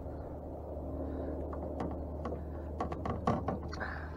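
Handling a small spotted sea trout and its hook while unhooking it: a run of short clicks and taps from about two seconds in, over a steady low background hum.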